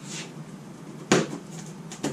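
A single sharp knock about a second in, with a brief fade after it: oil pan bolts being pushed into a sheet of cardboard.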